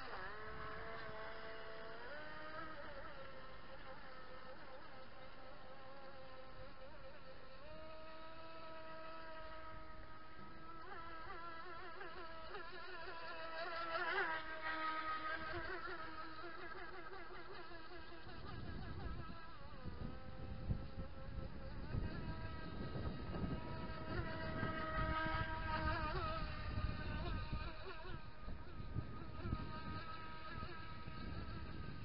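Radio-controlled model speedboat running laps at speed, its motor giving a high, buzzing whine that rises and falls in pitch as it accelerates and turns. From about two-thirds in, a low rumbling noise runs under it.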